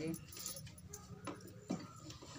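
Faint rustling of cut cotton cloth being lifted and spread out by hand, with light jingling of metal bangles on the wrist.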